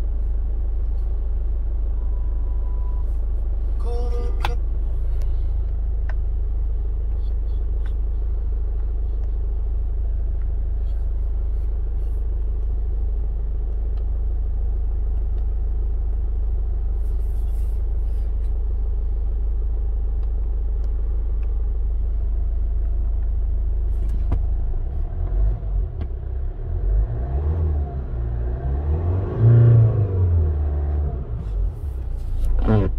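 Hyundai Santa Fe's engine idling steadily in Park, heard from inside the cabin, with a short electronic beep from the dashboard a few seconds in. In the last few seconds the engine is revved up and down, climbing highest near the end to about 3,000 rpm.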